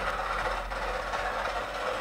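Feidwood electric scroll saw running steadily, its fine reciprocating blade cutting a padauk guitar headstock faced with an ebony veneer.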